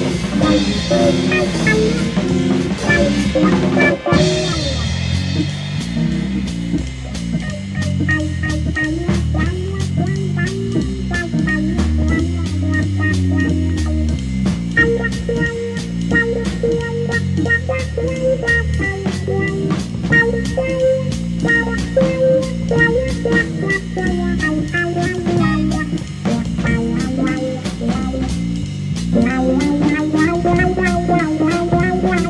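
Instrumental late-1960s psychedelic rock on record, with a drum kit keeping a steady beat under guitar and low melodic lines and no singing. A bright cymbal wash in the opening seconds cuts off about four seconds in.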